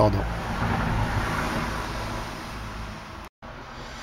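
Road traffic noise: a rushing sound with a low rumble that swells and then fades over about three seconds, broken by a brief total dropout just after three seconds.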